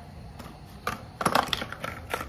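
Cardboard hair-colour box being crushed and flattened in gloved hands: a few sharp crackles, bunched most densely in the middle.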